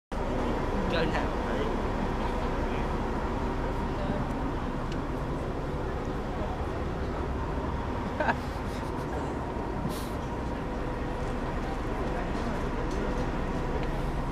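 Tour boat's engine running steadily on the open deck: a low rumble with a faint steady whine over it, under indistinct passenger chatter. A brief knock about eight seconds in.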